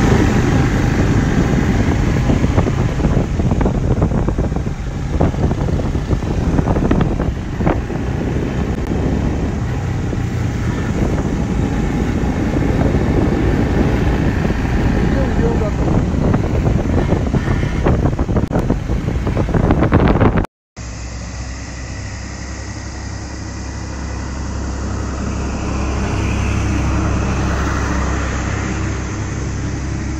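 Motorcycle engine running and wind rushing over the microphone while riding on a road, for about twenty seconds. Then the sound cuts off suddenly and a quieter, steady outdoor background follows.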